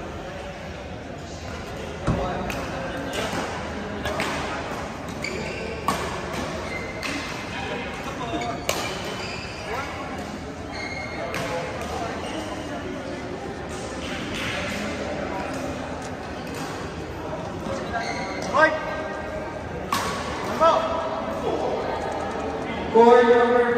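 Badminton rackets hitting a shuttlecock in a doubles rally, sharp strikes every couple of seconds echoing in a large sports hall, over background voices. Players call out a few times near the end.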